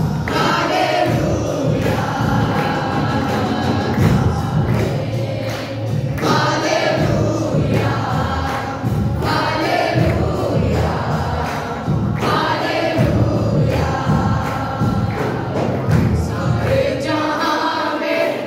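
A congregation singing a gospel worship song together, with musical accompaniment and percussion, carried over a loudspeaker system in a reverberant hall.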